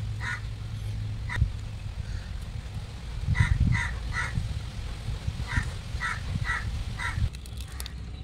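A bird giving short calls again and again, about nine in loose clusters, over a low rumble with a few dull knocks, the loudest swell about halfway through.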